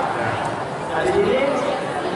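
Speech: a man talking into a handheld microphone over a loudspeaker, with crowd chatter.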